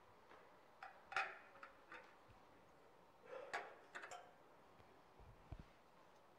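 Faint clicks and taps of communion ware being handled, in two short clusters about two seconds apart, then a soft low thump near the end.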